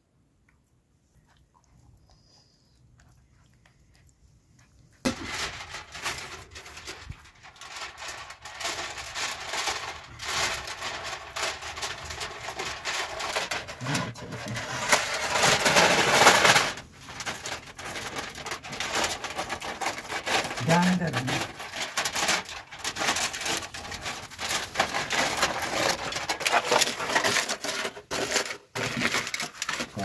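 Aluminium foil crinkling and crumpling as it is spread over a tray and cut with a knife, a dense rustle that starts suddenly about five seconds in, after near silence, and continues to the end.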